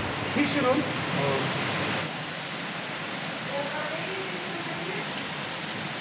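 Steady rush of water in fish-farm tanks, with a woman's voice briefly near the start and fainter voices in the middle.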